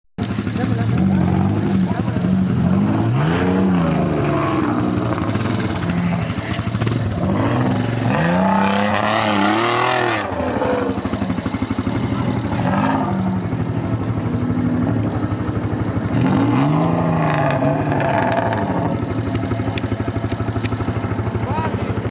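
Off-road 4x4's engine revved hard again and again, its pitch swelling up and falling back several times as the vehicle works across a muddy slope; it is loudest and busiest about eight to ten seconds in.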